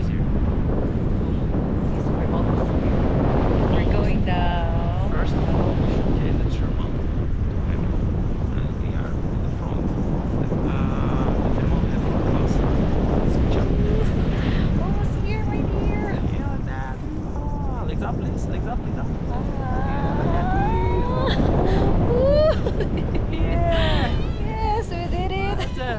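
Wind buffeting the camera microphone as the tandem paraglider flies: a steady, loud low rumble of rushing air.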